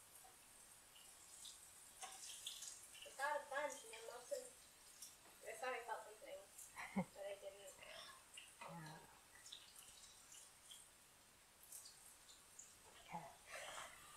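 Faint sizzling of eggplant pieces deep-frying in a pan of hot oil, with a few light clicks as metal tongs turn them over.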